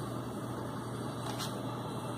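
Pentium 4 desktop computer's cooling fans running with a steady hum, a faint click about one and a half seconds in.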